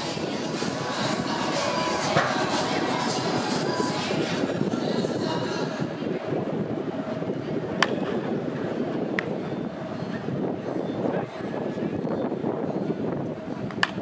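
Wooden baseball bat striking pitched balls in batting practice: four sharp cracks a few seconds apart, over a steady background din.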